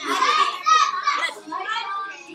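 Children's high-pitched voices chattering, several at once.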